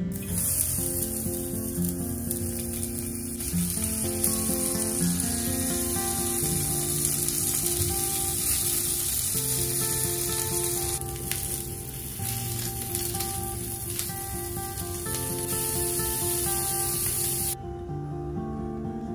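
Sausages frying in hot oil in a small cast-iron skillet: a steady, dense sizzle that cuts off suddenly just before the end.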